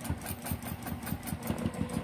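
Juki TL2010Q straight-stitch sewing machine running steadily while free-motion quilting, its needle stitching in a rapid, even mechanical beat.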